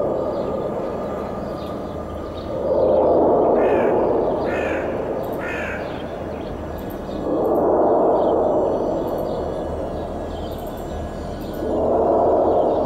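A distant, metallic-sounding roar of unknown source, swelling and fading roughly every four and a half seconds. About four seconds in, crows caw three times.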